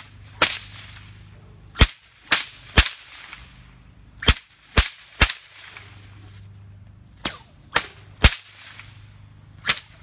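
Six-foot whip cracked overhead with repeated overhand flicks: sharp cracks in quick groups of three, about half a second apart, with short pauses between the groups.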